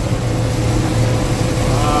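Gleaner M2 combine running steadily while harvesting soybeans, heard from inside the cab as a constant low machine drone. A voice begins right at the end.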